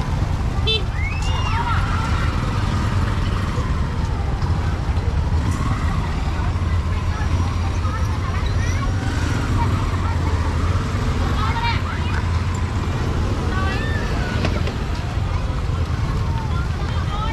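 Busy city street ambience: a steady low rumble of road traffic with scattered snatches of passers-by talking.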